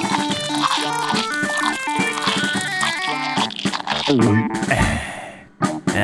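Cartoon background music playing a busy run of notes, which breaks off about three seconds in. It gives way to a falling-pitch cartoon sound effect that fades almost to nothing, then a sudden sharp hit near the end.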